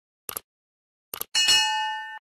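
Sound effects of an animated subscribe button: two quick mouse double-clicks, then a bright bell-like notification chime that rings on and slowly fades.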